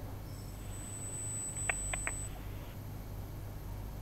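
A telephone line opening for a caller: quiet line noise and hum, a thin high whine lasting about two seconds, and three quick short beeps about halfway through.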